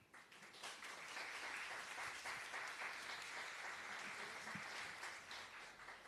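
Audience applause from a hall full of people, rising about half a second in, holding steady, then dying away near the end.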